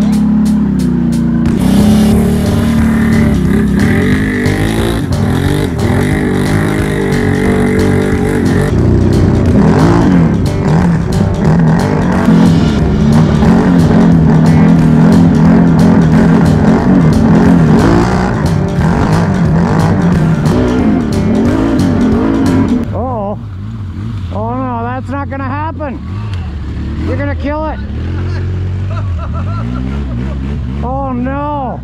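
Can-Am Renegade X mr 1000R ATV's V-twin engine running hard under throttle as the quad pushes through broken ice and muddy water, its pitch rising and falling. About 23 s in it drops in level to a series of shorter rev blips.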